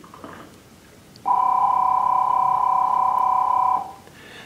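A steady electronic beep, two pitches sounding together, starting about a second in and lasting about two and a half seconds before cutting off.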